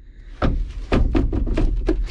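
Rapid, irregular clicking from a new New Holland tractor as the key is tried, about a dozen sharp clicks over a second and a half over a low rumble, with no cranking: the tractor's battery is dead.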